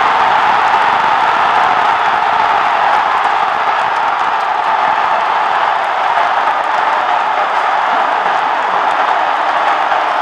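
Large football stadium crowd cheering loudly and steadily, a goal celebration.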